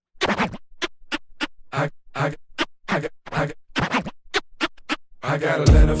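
Turntable scratching, in short separate strokes about two a second, as the intro of a hip-hop track. Near the end a beat with heavy bass comes in.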